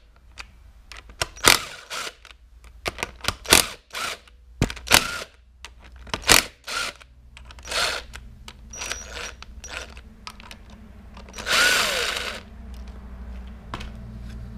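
Tool work on the clutch spring bolts of a KTM SX 125 two-stroke, done through a socket on a long extension: a series of separate clicks and knocks, then a burst of about a second from a power tool near the end as one spring bolt is spun out.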